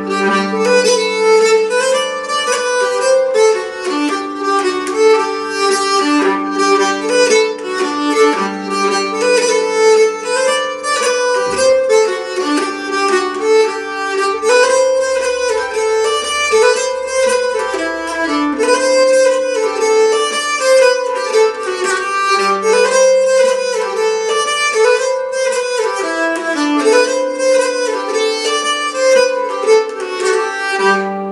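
A nyckelharpa bowed solo, playing a lively jig melody in quick running notes over a low drone note that comes and goes.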